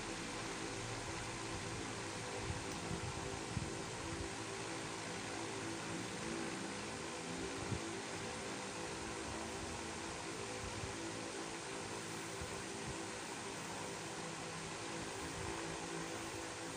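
Steady hum and hiss of room background noise, with a few faint, soft knocks and rustles as an electric iron is pressed and moved over a fabric sleeve piece.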